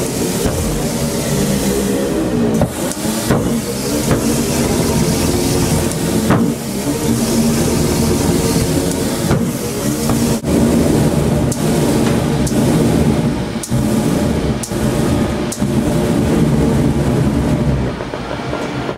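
Pyrophone, an LPG-fired flame organ, sounding a dense cluster of low, steady pipe tones over a rushing burner noise, with several sharp clicks along the way.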